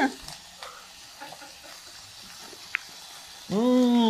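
Faint sizzle of food frying in a pan, with a brief tick a little after halfway. Near the end a man lets out a long, held 'mmm' as he tastes the food.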